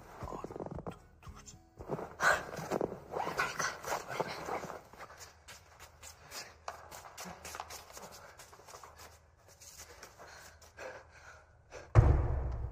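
Hurried footsteps and rustling clothes with quick, breathy noises, thinning into scattered soft clicks of steps, then a loud thud at the very end.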